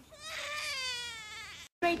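A baby crying: one long, wavering wail that slides slowly down in pitch and is cut off suddenly near the end.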